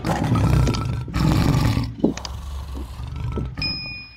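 Lion roar sound effect: two loud roars in the first two seconds, fading out after them, then a short bright ding near the end.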